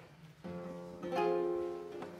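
Classical guitar played in two plucked strokes, about half a second in and again a little after a second, the second adding higher notes, both left ringing and fading away.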